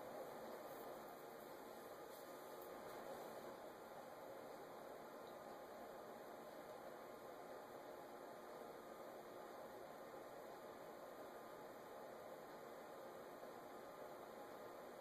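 Near silence: a steady faint hiss of room tone.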